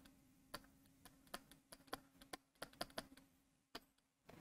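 Faint, irregular clicks of a stylus tapping on a pen tablet while a word is handwritten and underlined, about a dozen in all, over near silence with a faint steady hum.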